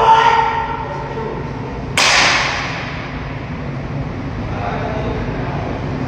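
A sudden loud hiss starts about two seconds in and fades away over a second or so, over a steady low rumble.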